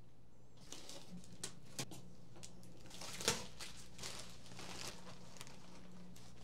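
Faint rustling and scattered clicks and taps as a cardboard shipping box is opened and the plastic wrap inside is handled, with one louder snap about three seconds in, over a low steady hum.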